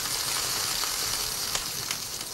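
Cartoon sound effect of burning, smoking feet: a steady sizzle that eases slightly near the end.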